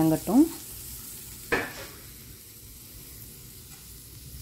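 Steel spatula stirring shallots, garlic, green chillies and coconut pieces as they sauté in a stainless steel kadai: a faint, steady sizzle, with one sharp scrape of the spatula against the pan about one and a half seconds in.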